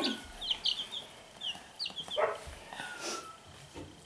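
Baby chicks peeping: a scatter of short, high, falling peeps, several in the first two seconds, then a longer, lower falling peep about three seconds in.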